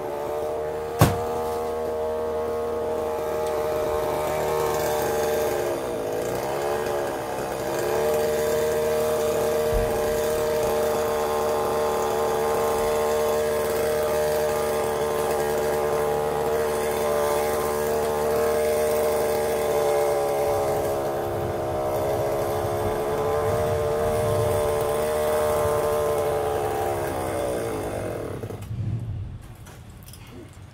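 Chainsaw running steadily at high revs, its pitch dipping and picking up again about six seconds in, then winding down and stopping near the end. A sharp knock about a second in.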